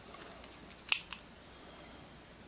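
A single sharp click just under a second in, with a couple of fainter ticks around it, from hands handling a pen and a steel ruler on a work surface.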